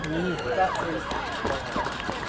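Spectators' voices: several people talking and calling out over one another, with no single clear speaker.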